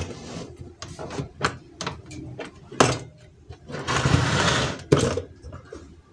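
The lid of a BOLDe digital rice cooker is unlatched and opened by hand: a few sharp plastic clicks in the first three seconds, then about a second of rustling noise and another click near the end.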